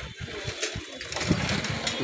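An engine running in the street, with people's voices coming in about a second in.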